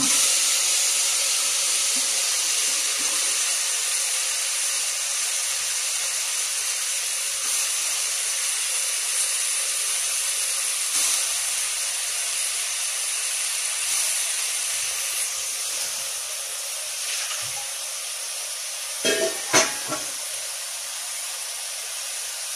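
Vegetables and masala sizzling in hot oil in an open aluminium pressure cooker: a steady hiss that slowly grows quieter. About nineteen seconds in come a few quick knocks of a steel ladle against the pot.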